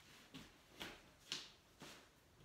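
Footsteps of a person in socks walking on a wooden floor: four soft steps about half a second apart.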